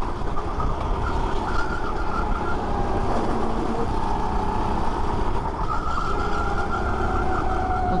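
Rental go-kart engine running hard at racing speed, its whine drifting up and down in pitch with the throttle, over a heavy low wind rumble on the onboard microphone.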